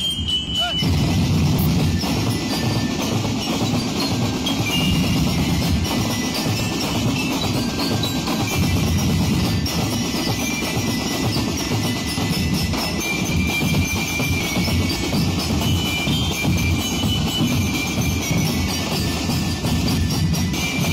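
Street drum band playing Ati-Atihan drum beats: dense, rapid, continuous snare and bass drumming, with short ringing bell-lyre notes above the drums.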